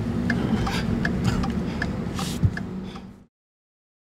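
Vehicle running, heard from inside the cabin: a steady low rumble with soft regular ticks about every three-quarters of a second. There is one sharp thump about two and a half seconds in, and the sound cuts off abruptly a little after three seconds.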